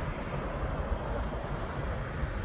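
Wind blowing across the microphone, a steady low noise with no clear events.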